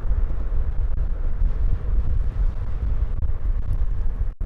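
Wind buffeting the camera microphone while riding, a loud, steady low rumble with no other clear sound.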